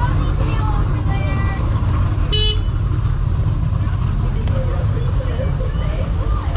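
Steady low rumble of idling trucks and heavy equipment, with one short vehicle horn toot about two and a half seconds in.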